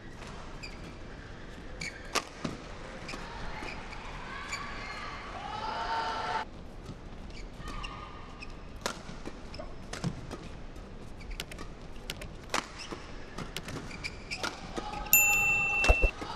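Badminton rally: rackets striking the shuttlecock in a fast men's doubles exchange, a long run of sharp hits at uneven intervals that come quicker in the second half, with shoe squeaks on the court mat and a sharp squeal near the end.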